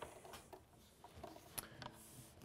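Near silence with a few faint taps and clicks from an electric guitar being handled and settled into playing position.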